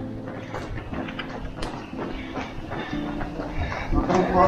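Running footsteps of several people on a paved street, a few steps a second, with faint music underneath.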